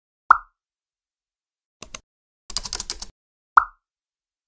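Two short 'plop' pop sound effects, one just after the start and one near the end, each a brief blip that drops slightly in pitch. Between them come two clicks and then a quick half-second run of rapid clicks.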